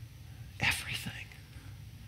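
A short, breathy, whispered vocal sound a little over half a second in, over a steady low hum.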